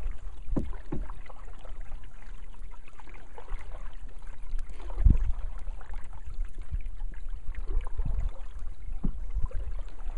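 Canoe being paddled through calm water: a handful of paddle strokes swishing in the water, the strongest about five seconds in, over a steady low rumble.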